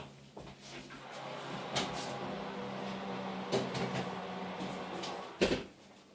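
Kitchen oven being worked: a steady low fan hum swells up, with a couple of knocks, then the door shuts with a loud thump near the end.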